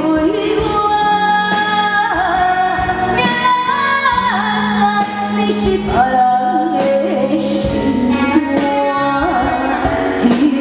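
A woman sings a Hokkien pop song through a microphone and PA over live band accompaniment. Her voice slides between held notes over sustained keyboard tones and regular drum hits.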